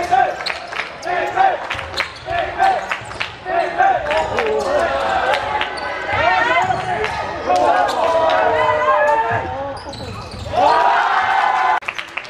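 Indoor basketball play: the ball bouncing on the hardwood court as it is dribbled, and sneakers squeaking on the floor in many short chirps as players cut and stop, with players' voices in the hall. The sound swells louder near the end.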